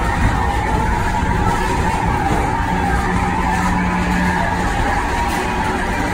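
Steady rolling rumble and rush of ride vehicles running on their track in a dark ride building, with a faint constant hum.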